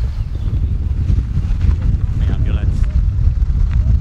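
Wind buffeting the microphone as a steady low rumble, with faint voices of people talking in the background.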